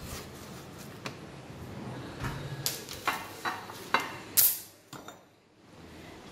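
Kitchenware clinking and knocking as it is handled in a drawer: a string of light clatters, with the sharpest knock about four and a half seconds in.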